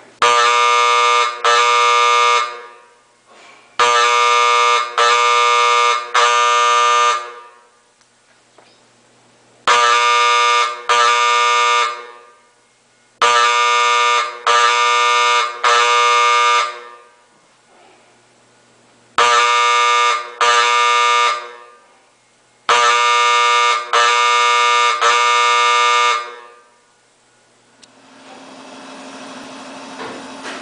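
Vintage coded school fire alarm horn sounding code 2-3: two buzzing blasts, a short pause, then three. The pattern repeats for three rounds, each blast lasting about a second, driven by a 1940s Standard Electric Time Company coded control panel set off by a pull-rod station.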